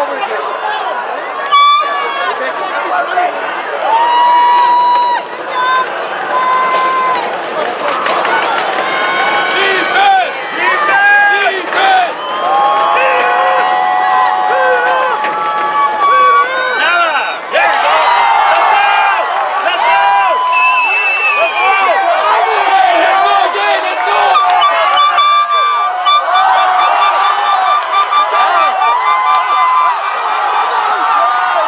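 Soccer spectators shouting and cheering, many voices overlapping with long held yells. A fast repeating buzz joins in the last few seconds.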